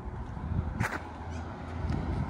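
Outdoor street ambience: a steady low rumble, with one brief sharp sound just under a second in.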